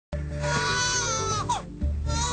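Newborn baby crying: one long wail that drops in pitch at its end, then a second wail starting near the end, over background music.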